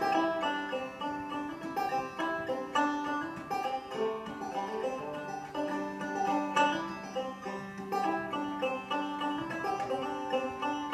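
Solo five-string banjo being picked, a quick, unbroken run of plucked melody notes. From about halfway through, a low note rings on steadily under the picking.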